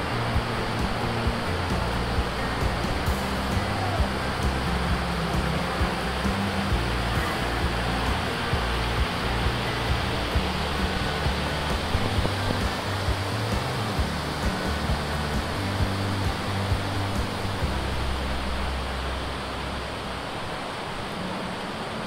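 Stream water rushing steadily over rocks, with background music carrying sustained low notes underneath.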